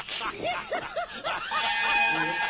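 Laughter: a quick run of short giggles, each rising and falling in pitch. Music with steady held notes comes in about one and a half seconds in.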